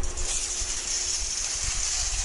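Supermarket background noise: a steady high hiss over an uneven low rumble, with a faint steady hum, from open refrigerated display cases and shoppers' carts.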